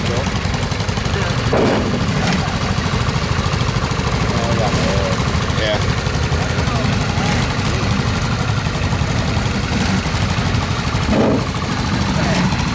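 Garden tractor's small engine running steadily at low speed with a fast, even putter, with brief voices in the background.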